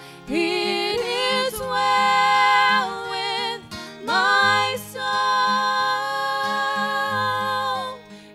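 A woman singing a gospel song into a microphone in two phrases, the second ending on a long held note with vibrato, over a soft, steady instrumental accompaniment.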